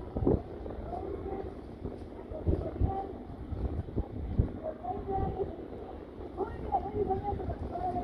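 Wind buffeting the microphone in gusts, with indistinct voices of people talking near the camera.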